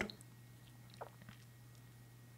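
Quiet room tone with a steady low hum, and one faint short click about a second in.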